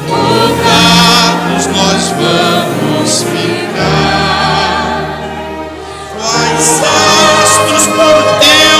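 A church congregation sings a hymn together with orchestral accompaniment. The sound eases off a little about five seconds in, then swells louder again about a second later.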